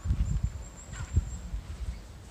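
Outdoor ambience of low thumps and rumble, loudest in the first second, with a faint thin high whistle lasting about a second and a half and a brief chirp about a second in.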